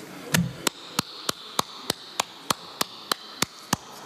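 A single person clapping alone in a quiet hall: twelve slow, even claps at about three a second, the first with a low thump. No one else joins the applause.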